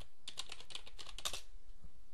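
Typing on a computer keyboard: a quick run of keystrokes that thins out about one and a half seconds in.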